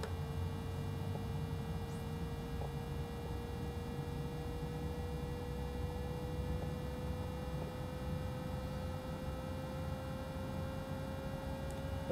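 Steady low background hum from a running computer, with a faint thin whine that rises slowly in pitch throughout.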